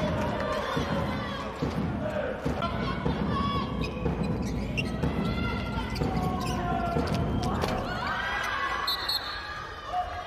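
A handball bouncing on the indoor court floor during play, amid players' shouted calls in a large, echoing sports hall.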